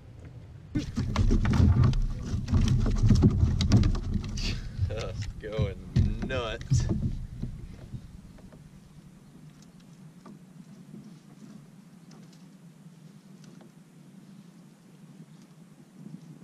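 Water splashing and sloshing with irregular slaps against the kayak as a hooked speckled trout thrashes at the surface while it is brought to the net, loud for about six seconds and then dying away to a quiet, steady background. A few short voice sounds come in the middle of the splashing.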